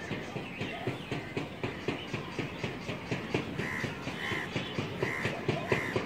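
A crow cawing, about five short calls spaced under a second apart in the second half, over a busy background of short knocks and clatter.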